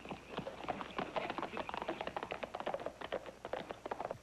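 A horse's hooves beating at a fast gait, a rapid, dense clatter of hoofbeats.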